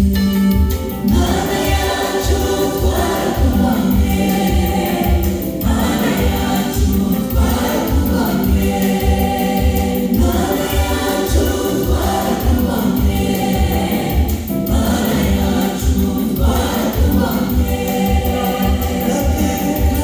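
Gospel song with choir voices singing over a steady bass beat of about two pulses a second.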